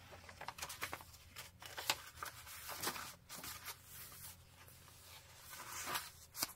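Paper pages of a handmade junk journal rustling softly as they are turned by hand, with a few short crinkles and taps of paper.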